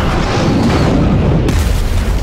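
Jet aircraft passing very low overhead: a sudden, loud blast of engine noise with a deep rumble, surging again with a burst of hiss about one and a half seconds in.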